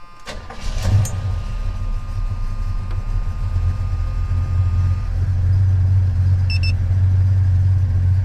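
1977 Chevy C10 engine with a lumpy cam, fed by an Edelbrock carburetor, running at a steady idle of about 850–900 rpm. A brief louder burst comes about a second in.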